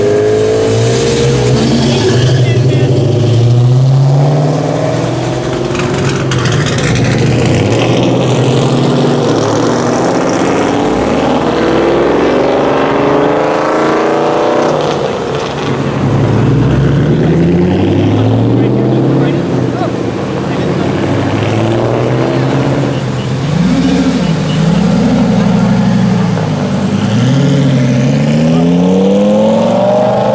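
Sports cars driving past one after another, engines revving as they accelerate, with repeated rising sweeps in pitch as they pull through the gears.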